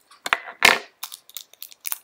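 Small cosmetics packaging being handled by hand: the box and pot of a loose mineral powder foundation rustling and scraping, loudest about two-thirds of a second in, followed by a run of light clicks.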